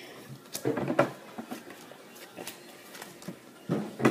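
Playing cards being dealt one at a time onto a wooden tabletop: scattered soft taps and slaps of the cards, a little louder about a second in.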